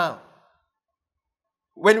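Speech only: a man's voice trails off with falling pitch, then about a second and a half of silence before he speaks again.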